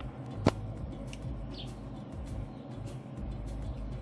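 Low steady hum of a Traeger pellet grill starting up, with one sharp click about half a second in.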